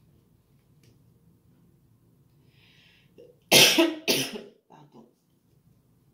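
A person coughing twice in quick succession, about halfway through, followed by a couple of quieter throat sounds.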